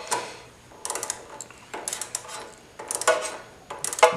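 Ratchet clicking in four short bursts about a second apart as a socket tightens the carburetor's fuel-bowl bolt.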